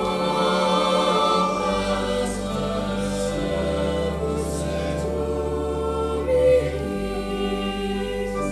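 Mixed choir of girls' and boys' voices singing a sacred piece, with long low notes held beneath the voices that change every couple of seconds.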